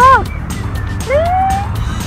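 A woman calling out in drawn-out, sliding words of encouragement: a short arching call at the start and a longer rising, held call just past a second in, over a steady low rumble of wind on the microphone.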